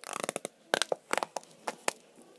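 A small plastic slime pot handled right at the microphone, fingers working its lid: a quick, irregular run of sharp crackles and clicks, loudest about three-quarters of a second in.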